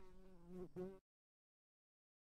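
A faint, steady buzz of one pitch, about a second long, with a brief break just before it stops.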